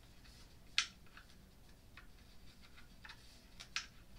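Faint, irregular small clicks and taps of an Allen wrench working screws into the top rail of a crib end panel during assembly, with two sharper clicks, one about a second in and one near the end.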